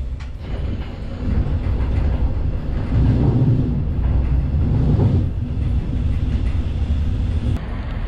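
Passenger train running, heard from inside the carriage as a steady low rumble that swells louder around the middle.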